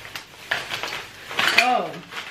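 Thin plastic shopping bag rustling and crinkling as hands open it and dig through it, with a few sharp clicks. A short falling vocal sound, like a hum or half-word, comes near the end.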